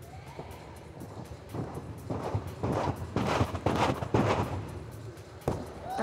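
A quick run of thuds from a gymnast's tumbling pass: hands and feet striking the sprung tumbling track in rapid succession. The run starts about a second and a half in and dies away near the end.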